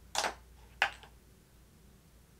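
Two short clicks about half a second apart as makeup items are handled, the second a little sharper.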